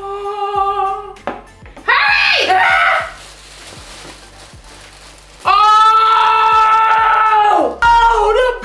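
Held voice notes over music: a steady note in the first second, a short rising shout at about two seconds, then a loud note held flat for about two seconds near the end.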